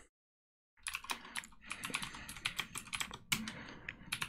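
Typing on a computer keyboard: a quick, irregular run of keystrokes that starts just under a second in, after a moment of total silence.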